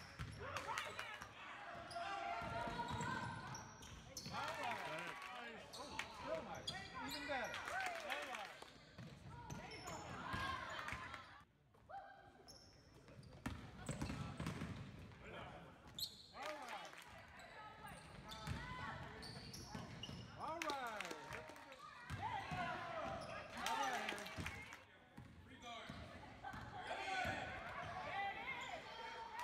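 Live basketball game sound in a gymnasium: a ball dribbling on the hardwood floor amid indistinct spectator and player voices.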